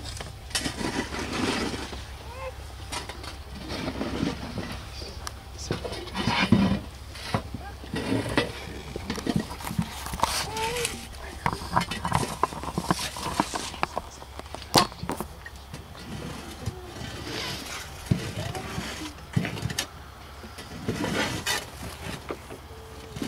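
Shovels scraping into loose soil and dropping it into a grave, with short scrapes and knocks scattered throughout and one sharper clink about two-thirds through, over low talk from people standing around.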